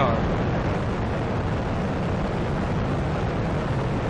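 Space Shuttle Endeavour's solid rocket boosters and main engines burning during liftoff: a steady, deep rumbling noise with no breaks.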